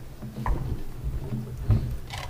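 A few dull low thumps and knocks, the loudest near the end, over a steady low hum.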